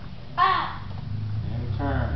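A child's short, loud, high-pitched shout, a taekwondo kihap, about half a second in, its pitch falling away. A brief voice follows near the end.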